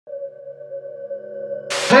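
Electronic intro music: a held synth chord, a drone of steady tones growing gradually louder. It ends in a short burst of noise just before a voice comes in.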